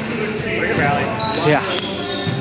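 Players' voices talking and calling out, echoing in a gymnasium, with one sharp knock near the end.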